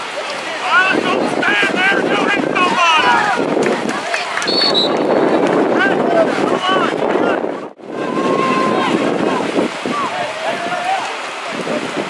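Indistinct shouting and calling from youth football players, coaches and sideline spectators, with wind buffeting the microphone. A short, high whistle sounds about four and a half seconds in.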